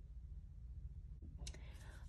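Quiet room hum with a single faint click a little over a second in, followed by a soft hiss near the end.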